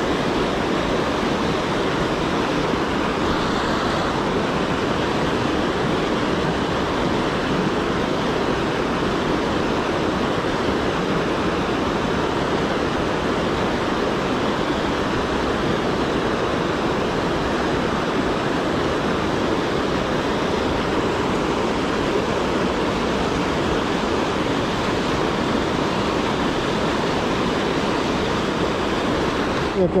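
Water pouring over a low weir on a small river, a small waterfall, giving a steady, unbroken rush.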